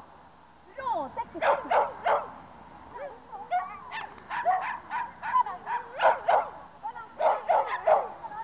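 A dog barking over and over in quick runs of two or three sharp barks, with short pauses between the runs.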